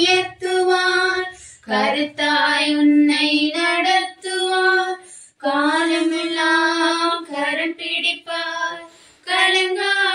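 Unaccompanied singing of a Tamil Christian song in a high solo voice, with long held notes and short pauses for breath.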